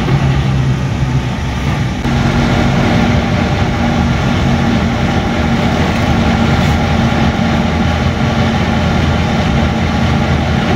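Truck engine running under way, heard from inside the cab as a steady drone. About two seconds in, its pitch steps up and it gets slightly louder, then it holds steady.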